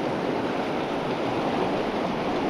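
Fast-flowing mountain river rushing over a rocky riffle: a steady, unbroken rush of whitewater.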